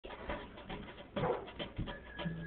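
Improvised playing: wire brushes swished and tapped on a metal cookie tin as a makeshift drum, with an acoustic guitar, and a few louder hits at uneven spacing. It sounds thin, as recorded on a cellphone.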